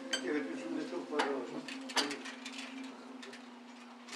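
Spoons and cutlery clinking on small plates during a meal, with two sharper clinks about one and two seconds in, over quiet voices and a steady low hum.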